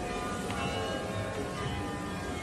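Bells ringing: several overlapping pitched tones that hold and fade, with a fresh strike about half a second in, over a low background rumble.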